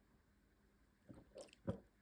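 Near silence, with three faint short mouth clicks in the second half.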